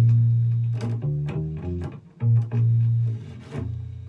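Bass guitar playing a short riff of about eight plucked low notes, the last one ringing out and fading near the end.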